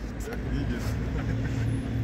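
A motor vehicle's engine running nearby: a steady low hum that grows louder about half a second in.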